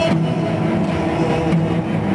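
A cello and double-bass ensemble sustaining a low, steady chord, recorded through a camcorder microphone.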